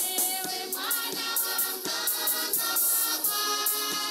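Mixed choir singing a hymn, with rattling percussion keeping a steady beat that comes in right at the start.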